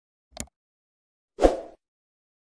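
Sound effects for an on-screen subscribe-button animation: a short double click, then about a second later a louder pop that fades quickly.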